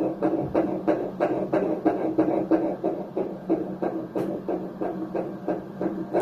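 Fetal heartbeat heard through a Doppler ultrasound machine: very fast, even pulses, nearly three a second, a heart rate in the 160s that the doctor calls normal.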